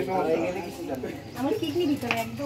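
Several people talking at once in indistinct chatter, with voices overlapping throughout.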